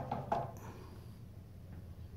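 A few soft handling clicks and knocks in the first half-second as a multimeter is propped up on a towel, then quiet room tone.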